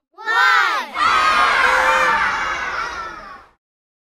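A child's voice shouting the last number of a countdown, then a group of children cheering and shouting together for a couple of seconds, fading out.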